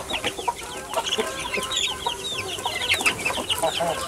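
A pen of young chicks peeping continually, many short, high, falling cheeps overlapping one another.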